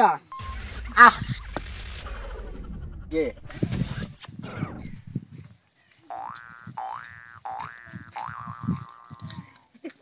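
Cartoon-style boing sound effect added to the comedy: a string of about four rising glides in the second half, the last one drawn out longest.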